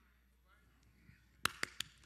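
A near-silent pause, then three quick, sharp clicks close together about a second and a half in.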